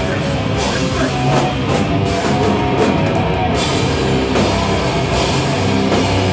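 Hardcore punk band playing live at full volume: electric guitars, bass and a drum kit, with cymbal hits cutting through the steady wall of sound.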